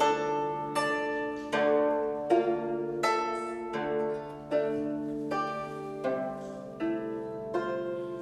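Three guzheng (Chinese zithers) playing together, two tuned in F and one in C: plucked chords struck in a steady pulse about every three-quarters of a second, each ringing on into the next.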